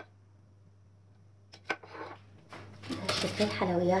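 A few sharp clicks and knocks of a small kitchen utensil, a metal sieve with a plastic handle, being set down on a stone countertop, the loudest about one and a half seconds in; a woman starts speaking near the end.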